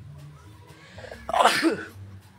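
A single loud, short sneeze about a second and a half in, a sharp blast that falls away in pitch.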